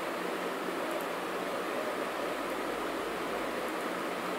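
Steady background hiss with a faint low hum, unchanging throughout; no distinct events.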